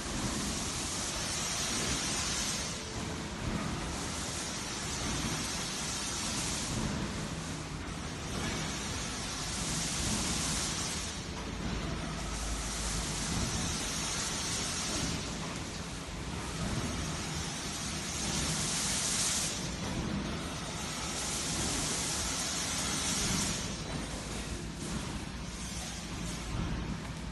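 Hexagonal gabion wire-mesh weaving machine running: a steady, loud mechanical noise with a hissing swell that comes back every few seconds as the machine cycles through its weave.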